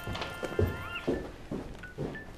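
Quick footsteps, about two a second, over faint music with a few rising gliding tones in the first second.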